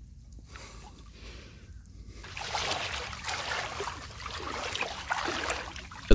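Shallow water sloshing and splashing in small irregular bursts, growing louder about two and a half seconds in.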